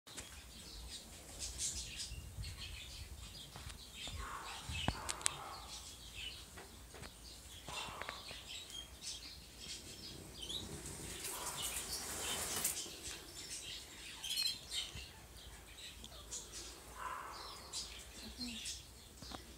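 Small birds chirping, with short high chirps repeating throughout. Two sharp clicks come about five seconds in.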